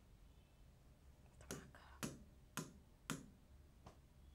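A series of four sharp clicks about half a second apart, with a fainter fifth one near the end.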